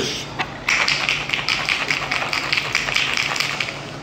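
Portable electric blender bottle running, its blades crushing ice in water with a rapid, even rattle that starts under a second in.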